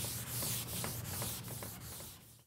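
Blackboard eraser rubbing back and forth across a chalkboard in quick strokes, about five a second, fading toward the end.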